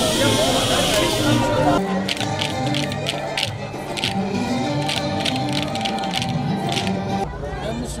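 Voices and crowd noise at first. From about two seconds in comes Turkish folk dance music with a rapid clicking beat, the kind made by dancers' wooden spoons. Talk takes over again just before the end.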